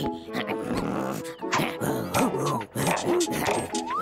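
Playful cartoon background music with wordless squeaks and coos from furry cartoon characters, mixed with short clicky sound effects. A quick rising whistle-like glide comes near the end.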